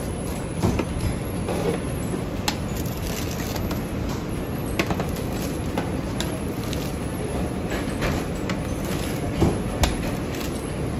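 Pizza cutter wheel rolling through a baked crust and clicking against an aluminium sheet pan, with a few sharp clicks and two loudest near the end, over a steady low background rumble.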